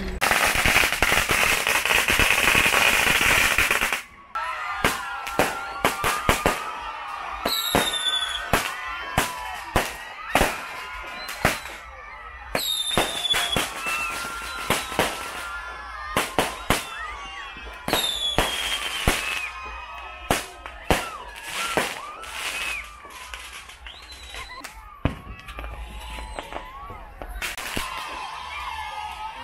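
Fireworks going off overhead. A loud rushing hiss fills the first four seconds, followed by a long irregular string of sharp bangs and cracks. Several high whistles fall steeply in pitch along the way.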